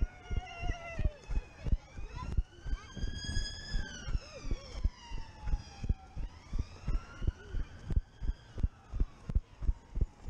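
Quick, regular thuds of running footsteps on grass, jolting the body-worn camera about two to three times a second. Behind them a siren wails slowly up and down, rising and falling about every three seconds.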